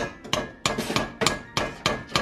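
Wire potato masher knocking against the side of a metal pot of mashed potatoes, about three sharp knocks a second.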